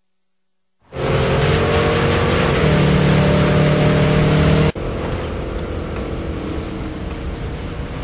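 Car engine running with road noise, heard from inside the cabin, starting about a second in. It cuts abruptly to a quieter, steady engine rumble a little past halfway through.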